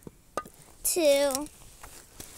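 A child's short wordless vocal sound, about half a second long, dipping slightly in pitch and then holding. It follows a brief knock.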